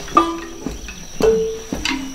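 Marimba bars struck one note at a time at a slow, sparse pace, each wooden-bar note ringing briefly and dying away. A steady high-pitched tone runs underneath.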